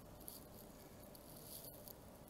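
Near silence: room tone, with faint soft scratching of a marker on paper in the first second.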